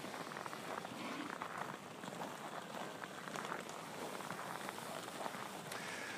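Faint outdoor ambience of a snowy cattle pen: a steady soft crackle with many small scattered clicks, as steers stand and shift about in the falling snow.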